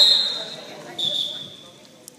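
Basketball referee's whistle: one loud blast at the start, then a second, shorter blast about a second in, signalling a stop in play.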